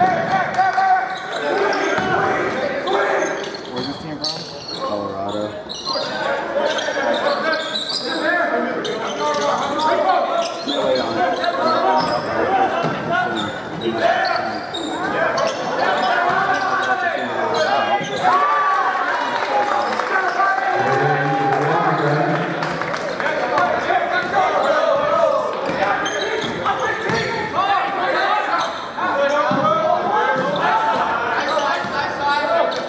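Basketball dribbled and bouncing on a hardwood gym floor during play, under steady talk from nearby spectators, in the reverberant space of a large gymnasium.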